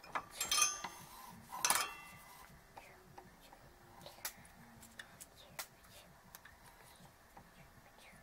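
Metallic clinks and rattles from handling a circuit board and a soldering iron: two louder ringing clusters in the first two seconds, then scattered light clicks.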